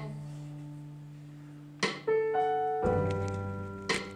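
Instrumental band music between sung lines: a keyboard chord rings and fades over the first two seconds, then a few single notes are struck and a new chord comes in about three seconds in.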